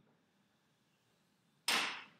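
A single quick stroke of chalk drawn along a blackboard near the end, short and loud, marking out a long straight line.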